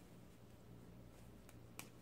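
Two short clicks of a baby bodysuit's crotch snap fasteners being pressed shut, about a second and a half in, the second louder, against near silence.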